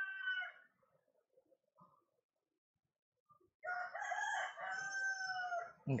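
A rooster crowing twice: the end of one crow in the first half-second, then a full crow of about two seconds starting just past the middle, its held note falling slightly at the close.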